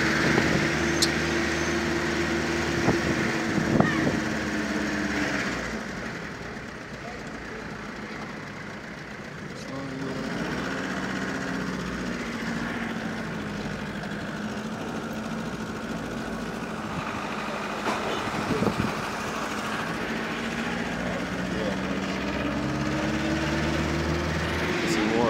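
Car engine heard from inside the cabin, running at a steady note, dropping away about six seconds in, then coming back and slowly rising in pitch near the end. A few light knocks sound over it.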